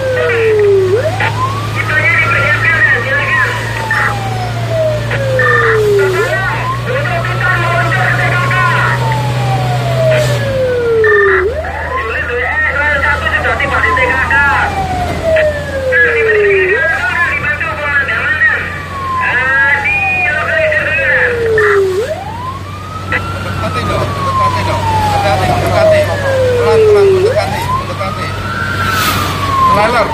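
Fire truck siren in a slow wail, each cycle rising for about a second and then falling for several, repeating about every five seconds. Underneath runs a steady engine drone that drops in pitch about ten seconds in, and shorter warbling higher sounds come and go above the siren.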